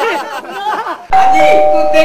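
A doorbell's two-note ding-dong chime, the higher note then the lower, starting about halfway in and ringing on to the end.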